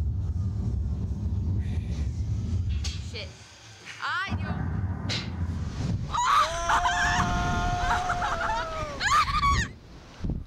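Slingshot reverse-bungee ride launch: a low rumble, a brief lull about three seconds in, then the rumble returns as the capsule is flung skyward. About six seconds in, a rider holds one long, high scream for some three seconds, followed by shorter shrieks near the end.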